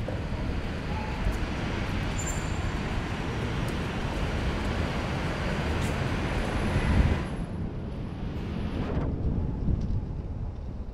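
Steady rushing outdoor city noise of traffic and wind on the microphone, dropping off suddenly about seven seconds in.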